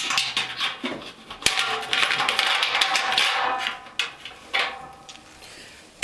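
Stainless steel Blichmann BoilCoil heating element being shoved into place inside a stainless brew kettle, its terminal prongs pushed out through holes in the kettle wall: metal clicking and scraping against the pot, with one sharp knock about a second and a half in. The noise dies down near the end.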